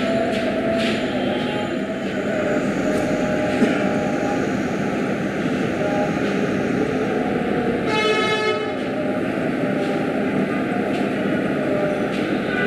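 Buddhist monks and the seated gathering chanting together in a steady, droning unison. A brief high-pitched tone cuts in about eight seconds in.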